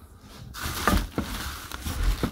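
Packing being handled: plastic wrapping rustles and a few light knocks and clicks sound as chair parts are lifted from the box, starting about half a second in.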